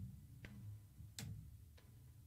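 Near silence: a low hum with three faint, sharp clicks spread across it.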